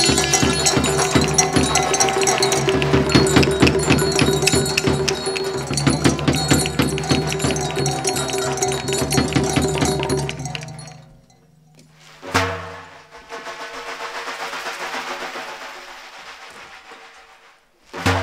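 Traditional Iranian folk music: a held wind-instrument melody over fast drum beats, which stops about eleven seconds in. A single drum stroke follows, then a quieter steady noise, and another drum stroke at the very end.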